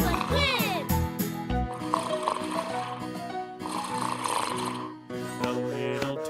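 A cartoon hare snoring: two long, breathy snores about a second and a half apart, over a bouncy children's-song backing track. A short sliding vocal sound comes in the first second.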